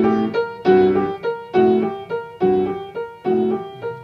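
Piano playing a blues lick over and over: a quick triplet figure, F-sharp, G, B-flat, with low left-hand notes under it, repeated about once a second.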